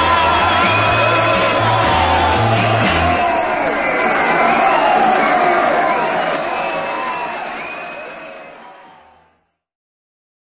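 The closing seconds of a 1964 German-language pop record: a held chord over a pulsing bass for about three seconds, then voices and whoops over a fade-out that dies away to silence about nine seconds in.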